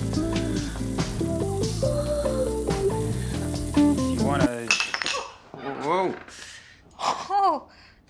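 Acoustic guitar music playing, cutting off suddenly about halfway through, with a few sharp clinks like china or cutlery around the cut. After it a woman's voice makes a few short, drawn-out sounds with a rising and falling pitch.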